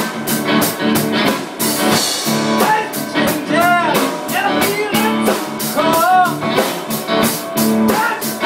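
Blues-rock band music: guitar over a steady drum-kit beat in an instrumental passage, with a pitched line bending up and down about halfway through and again near six seconds in.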